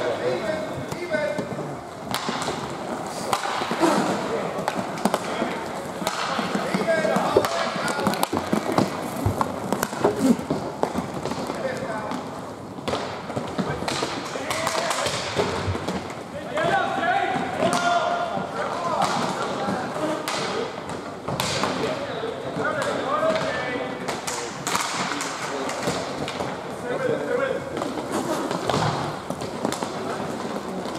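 Roller hockey play: repeated sharp clacks and thumps of sticks, puck and bodies against the boards, under voices of players and onlookers calling out.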